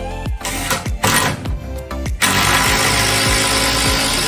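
Cordless drill driving screws into a timber wall frame: short runs of the motor in the first half, then one longer run of about two seconds from about halfway in. Background music with a steady beat plays underneath.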